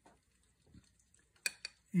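A metal spoon clicking twice against a glass bowl as food is scooped, with little else but quiet room tone.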